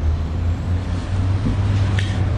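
Steady low rumble of city traffic, with no other sound standing out.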